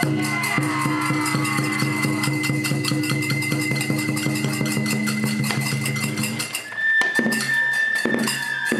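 Japanese taikagura festival music accompanying a lion dance: a bamboo flute holds a high note over quick, even drum and cymbal strokes. Just before seven seconds in, the music breaks off for a moment and resumes with the flute on a slightly lower note.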